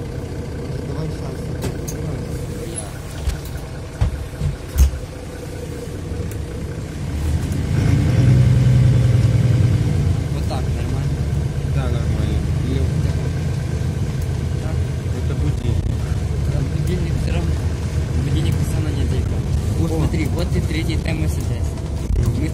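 Mercedes-Benz O530 Citaro city bus heard from inside the cabin while driving, a steady engine and drivetrain hum. The low rumble grows louder about seven seconds in and stays up. A few sharp knocks come about four to five seconds in.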